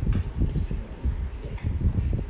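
Irregular low rumble and rustle of handling noise on a phone's microphone as the phone is moved and panned around.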